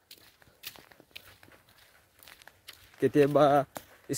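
Faint, soft footsteps crunching on a dirt road, irregular and quiet, before a man's voice starts about three seconds in.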